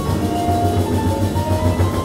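Live quartet of piano, vibraphone, bass and drums playing a dense passage: a thick, constant low rumble with short ringing pitched notes above it.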